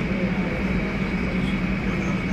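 Boeing 737's twin jet engines at taxi idle as the airliner rolls slowly toward the listener: a steady hum with a constant high whine over it.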